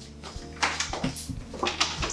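A few quick flip-flop footsteps slapping on a tile floor, then a person settling onto a padded sofa.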